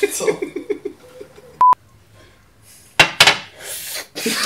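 A man laughing in quick, even bursts, then a single short, pure electronic beep about a second and a half in. Two sharp knocks follow about three seconds in.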